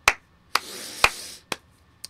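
Four sharp finger snaps, about half a second apart, the third the loudest, with a breathy hiss between the second and the fourth.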